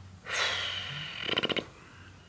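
A man's long, loud breath out through the open mouth, a heavy sigh of tiredness, ending about a second and a half in with a short creaky rattle in the throat.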